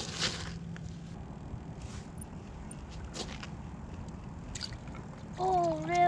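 Low steady background noise with a few brief clicks. Near the end comes a child's drawn-out wordless voice, sliding up and down in pitch.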